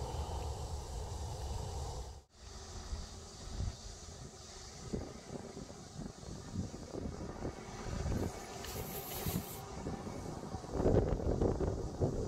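Wind on the microphone outdoors, a steady low rumble, with a brief dropout about two seconds in and faint handling knocks after it.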